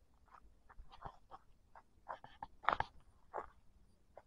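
Footsteps crunching on dry leaf litter and loose stones of a forest path: faint, irregular crackles at walking pace, loudest about three-quarters of the way through.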